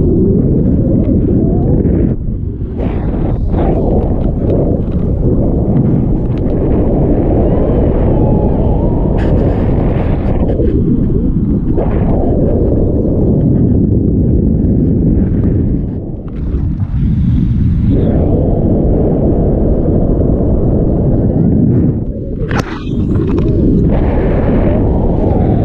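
Heavy wind buffeting an action camera's microphone during a tandem paraglider flight: a loud, steady low rumble that eases briefly a few times.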